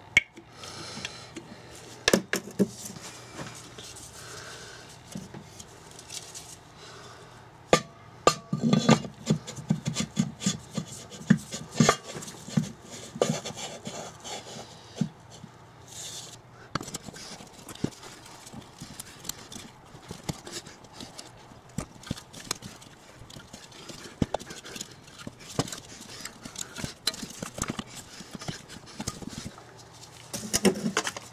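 Metal engine parts being handled and fitted: irregular clicks, knocks and rubbing as a crankshaft is set into the cylinder block of a Briggs & Stratton 2 hp engine.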